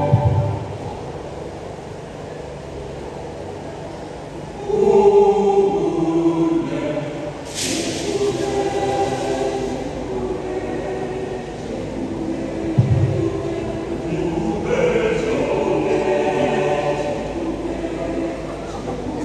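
Mixed choir of male and female voices singing a hymn, quieter at first and then fuller from about five seconds in. One low thump a little past the middle.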